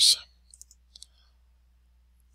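Three faint, sharp computer mouse clicks in the first second, with near silence after.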